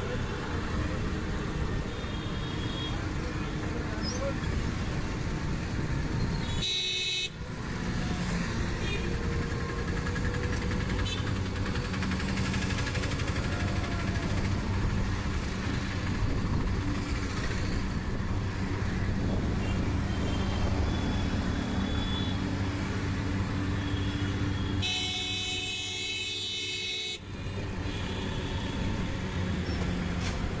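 Busy city road traffic heard from a moving vehicle: a steady hum of engines, with horns honking now and then.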